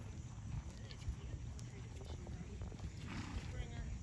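Faint hoofbeats of horses moving on a soft dirt arena, over a steady low rumble of background noise, with faint distant voices.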